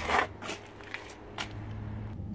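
Handling noise from the camera being moved about inside the truck's cab: a brief rustling scrape at the start, then a few faint clicks and rustles. Under it runs a low steady hum from the Ram's 5.7 Hemi V8 idling.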